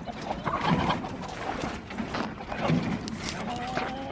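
Irregular rustling, crunching and small knocks of hands working a corner support of electric poultry netting loose and of footsteps on wood-chip mulch. A faint short pitched call sounds near the end.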